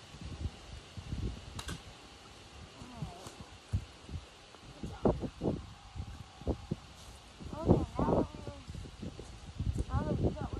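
Low, uneven buffeting of wind on the microphone, with a man's brief, unintelligible vocal sounds a few times, the loudest about eight seconds in.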